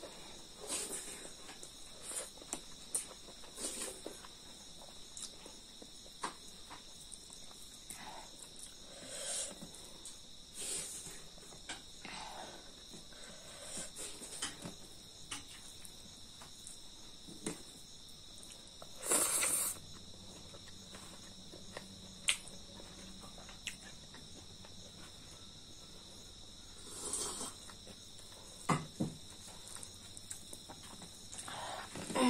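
Crickets trilling steadily in the background. Over them come intermittent close eating sounds: chewing and lip smacks as rice and chicken are eaten by hand. One louder, longer noise comes a little past the middle.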